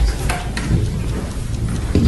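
Room noise: a steady low rumble with a few faint clicks.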